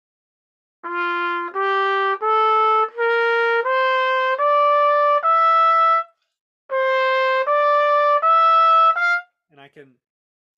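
C trumpet playing an ascending F major scale in clear held notes, one note per step. It breaks briefly about six seconds in, then picks up again on the upper notes and ends on a short top F. The notes demonstrate the trumpet's built-in intonation problem: every note of the scale sits a little flat or sharp.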